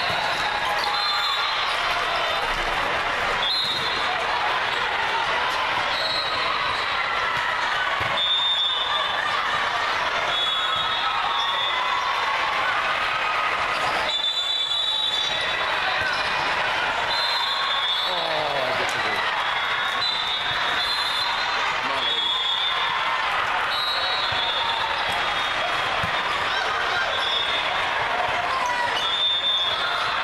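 Volleyball rallies in a large indoor hall: repeated short, high sneaker squeaks on the court and the ball being struck, over a steady din of spectators' and players' voices.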